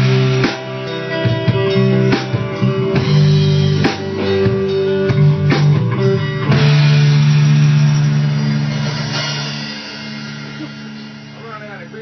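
Rock band playing: electric guitar over a drum kit, with drum hits through the first half. Then a final held chord rings and slowly fades out as the piece ends.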